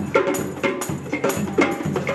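A group of hand drums, djembes among them, played together in a steady rhythm of sharp slaps and tones, about three strokes a second.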